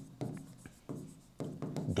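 Pen tip writing on an interactive whiteboard screen: a handful of short taps and scratches as a word is written out by hand.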